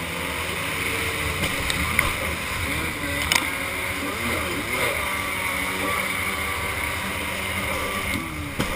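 Kawasaki X2 stand-up jet ski's two-stroke engine running and revving up and down through a turn, with water spray and wind on the helmet microphone. A couple of sharp knocks come about two and three seconds in.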